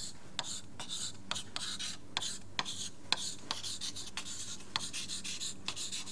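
Handwriting: a run of short, irregular scratching strokes as a chemical equation is written out by hand.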